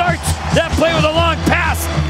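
Television hockey commentator speaking over background music with a steady low bass.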